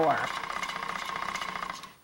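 Hand-cranked magneto generator whirring as its crank is turned, a fast, even rattle with a steady hum in it, generating enough current to light a small bulb. It dies away just before the end.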